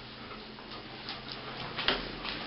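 A dog's claws ticking on a tiled floor as it walks, a few light clicks with one sharper click near the end.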